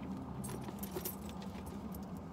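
Gold-tone metal chain strap of a leather crossbody purse jingling as it is lifted and handled, a run of light metallic clinks starting about half a second in.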